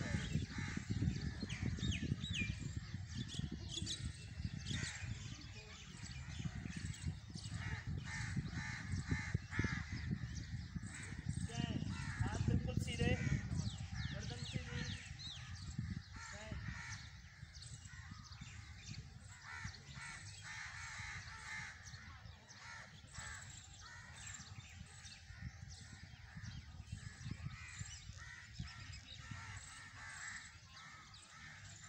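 Crows cawing and small birds chirping, over a low outdoor rumble that eases about halfway through.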